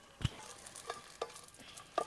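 Flat wooden spatula stirring dry red chillies in a metal pan as they roast: soft scraping with a few sharp light knocks of the spatula against the pan.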